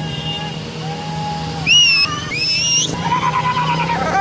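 Several motorcycles running at walking pace, with a steady low engine note. About halfway through come two loud, rising whistles, followed by raised voices shouting near the end.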